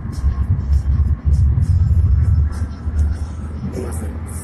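Low, uneven rumble of a car on the move, heard inside the cabin through a phone's microphone.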